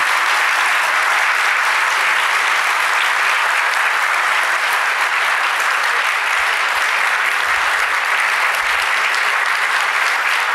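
Large audience applauding steadily, a dense, sustained clapping that neither swells nor fades. Some listeners are rising to their feet as they clap.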